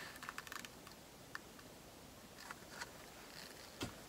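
Faint, scattered light clicks and taps of plastic cups being handled while acrylic paint is layered into a cup, with one sharper click near the end.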